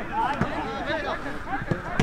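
Several people's voices calling out over each other on a football pitch, with a couple of sharp knocks.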